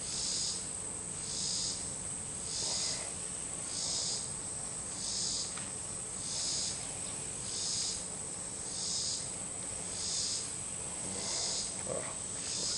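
Insects chirping in a slow, even pulse, about one high-pitched pulse every second and a quarter, over a steady high insect drone.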